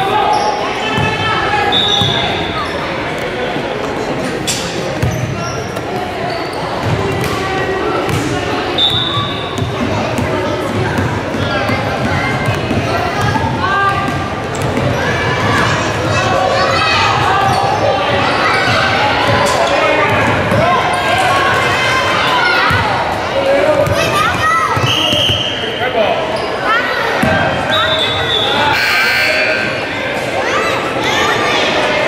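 A basketball bouncing on a gym's hardwood floor during play, amid indistinct voices of players and spectators that echo in the large gym.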